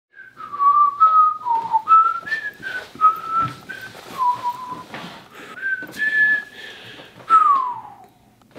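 A man whistling a slow, meandering tune, one clear note at a time, ending in a falling glide near the end.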